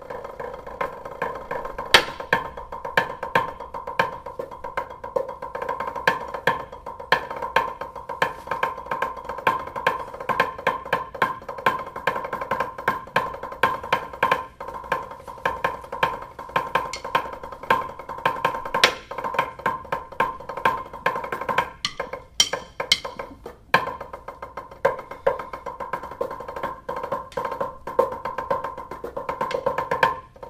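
Rudimental snare drum solo played with drumsticks on a practice pad: a continuous stream of rapid strokes, rolls and accents.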